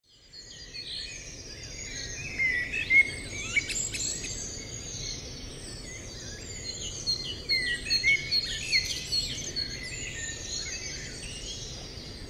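Several songbirds singing and chirping at once, many short calls and trills overlapping, fading in from silence at the start.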